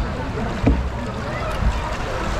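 Log flume boat floating along its water channel: steady rushing water with a low rumble, and two brief dull knocks, about a third of the way in and near the end.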